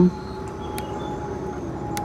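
A steady motor-like drone holding an even pitch, with two faint clicks, one just under a second in and one near the end.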